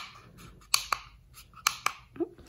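Plastic buttons on a handheld ceiling-light remote control clicking as they are pressed: two pairs of short, sharp clicks about a second apart.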